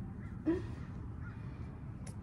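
A woman's brief wordless vocal sound, rising in pitch, about half a second in, over a low steady background rumble.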